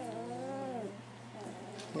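A 20-day-old puppy whining: one drawn-out cry in the first second that rises and then falls away.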